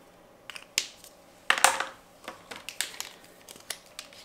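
Art supplies being handled on a table as a marker is set down and a pastel stick picked up: a few sharp clicks and taps, and a short, loud scratchy noise about a second and a half in.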